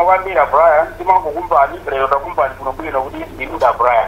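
Speech from a radio broadcast, with the thin sound of a narrow radio band.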